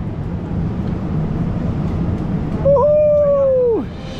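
Steady city street noise at a busy intersection. Near the end comes a single high, held call of about a second that drops sharply in pitch as it ends.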